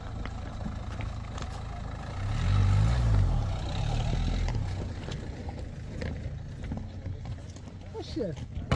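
Dacia Duster SUV engine labouring as it crawls over loose stones and flood debris. It swells louder for a couple of seconds around the middle as the car passes close by, with stones clicking and knocking under the tyres.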